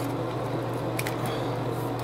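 Plastic bottle cap wrapped in filter foam being handled and pressed onto a small plastic bottle: a faint click about a second in, over a steady low hum.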